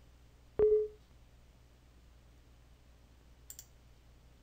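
A single sharp knock with a brief ringing tone about half a second in, the loudest sound; two faint clicks near the end, like mouse clicks.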